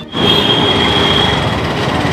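Busy road traffic: a steady rush of passing vehicles, with a thin high whine for most of the first second and a half.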